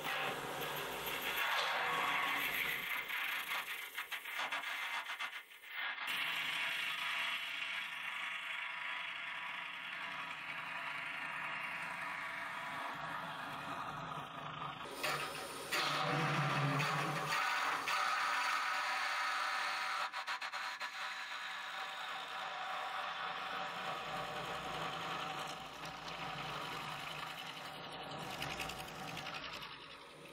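Forstner bit in a tailstock drill chuck boring into a spinning wood blank on a lathe: a steady scraping cut with the lathe running, broken briefly twice.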